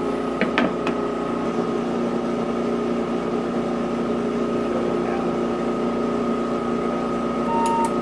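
Balzers HLT-160 dry helium leak detector running through its internal leak calibration: its Edwards ESDP-30 dry scroll pump and vacuum system give a steady hum with a steady high tone. A couple of clicks come about half a second in, and a short beep sounds near the end.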